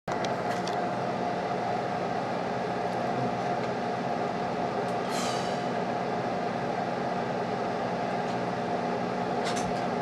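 Steady electrical hum and hiss from an idling guitar amplifier with an electric guitar plugged in, with a constant mid-pitched tone over it. A few light clicks and a short falling chirp come about five seconds in.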